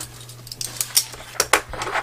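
Pages of a disc-bound planner being turned by hand, with its clear plastic cash-envelope pocket handled: a quick series of light clicks and rustles.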